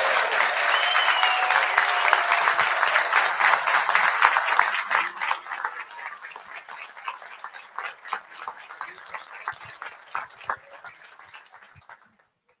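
Audience applauding, full and dense for about five seconds, then thinning into scattered claps and dying away.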